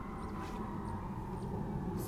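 Outdoor background with no clear event: a steady low rumble, a faint held tone, and faint high chirps repeating two or three times a second.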